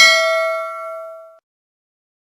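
Notification-bell sound effect from a subscribe-button animation: one bright bell ding with several ringing tones that fade out and stop about a second and a half in.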